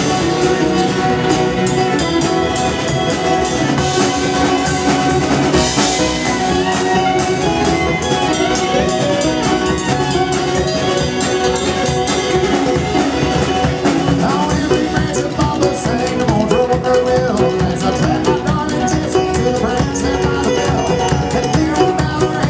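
Live string band playing an instrumental passage on banjo, acoustic guitar, fiddle and drum kit, loud and steady.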